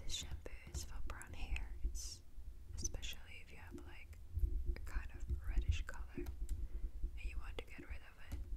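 A woman whispering close to the microphone, with a few light taps and clicks in between.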